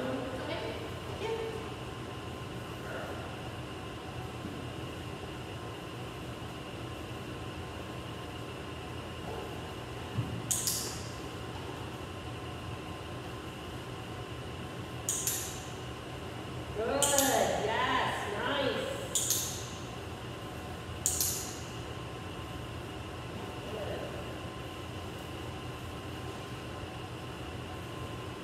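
Steady room hum, broken by a few short soft hissing sounds and, past the middle, a second or so of quiet speech.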